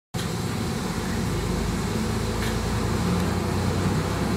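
KiHa 220 diesel railcar's engine idling with a steady low drone, heard from inside the car. There is a faint click about two and a half seconds in.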